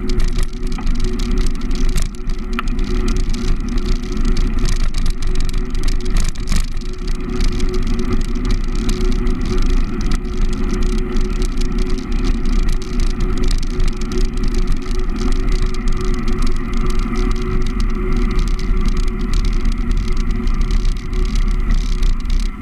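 Riding noise on a bicycle-mounted action camera: a steady wind rumble on the microphone with frequent small clicks and rattles from the bike and camera mount.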